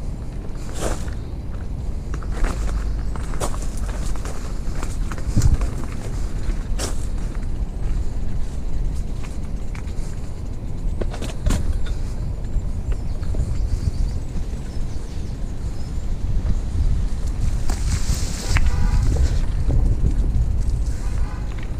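Wheels rolling over a rough gravel and dirt path: a steady low rumble with scattered clicks and ticks, growing louder and hissier near the end.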